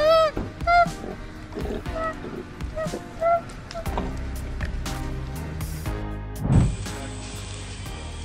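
An injured koala crying out: four short cries, each rising and falling in pitch, in the first few seconds, over background music. A dull thump comes near the end.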